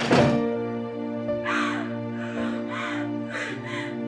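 Sad background music with long held notes. A loud thump right at the start, then a girl sobbing and crying out in short bursts about every half second.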